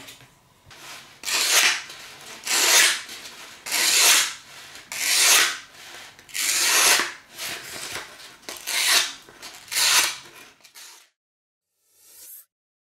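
A restored Mora knife's steel blade is drawn in seven even strokes, a little over a second apart. The strokes stop suddenly shortly before the end.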